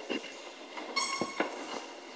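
Congregation sitting down on wooden pews: a few scattered knocks and thumps, with a short squeak about a second in.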